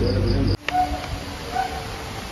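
Crickets chirping: a high, pulsing trill over the tail of a child's voice, then a sudden drop to quiet, faint background about half a second in.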